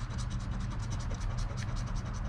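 Coin scraping the latex coating off a paper scratch-off lottery ticket in quick, rapid back-and-forth strokes, several a second.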